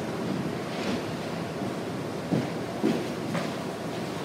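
Steady hiss of room noise, with a few faint brief sounds a little past halfway.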